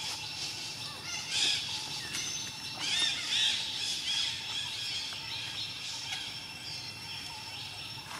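Baby macaque giving high-pitched squealing calls, in clusters about a second and a half in and again around three seconds.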